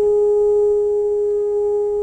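French horn in an orchestra holding a single long, steady note.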